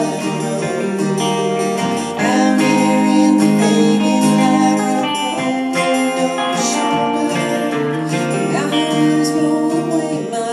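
Live music played on an electric guitar and a strummed acoustic guitar together, steady and loud.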